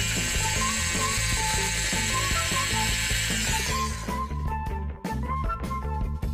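Plastic toy dentist drill running with a rattling mechanical whirr for about four seconds, then stopping. Background music plays throughout.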